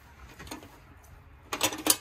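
A metal garlic press being picked up and handled: a quick cluster of metallic clicks and clinks about one and a half seconds in, after a near-quiet stretch.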